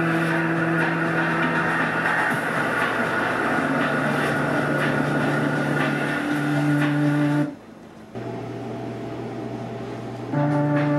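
A multitrack song playing back from GarageBand on the computer: held, steady tones that shift to new pitches every couple of seconds. The sound drops out sharply about three-quarters of the way through and carries on more quietly.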